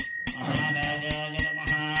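Temple bells struck in a fast, even rhythm, about three to four strokes a second, each stroke ringing on over a steady sustained tone, as is usual while the aarti lamp is waved.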